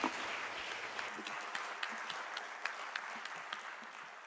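Audience applause, a dense patter of many hands clapping, gradually fading out.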